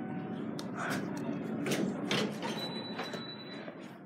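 Dover elevator doors sliding open with a steady rumble, mixed with scattered light knocks. A faint high steady tone comes in about two and a half seconds in.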